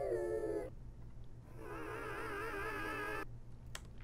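Electronic music clips playing back from an Ableton Live session. A held pitched note slides down and stops under a second in, then a second held note with a slowly wavering pitch sounds for about two seconds.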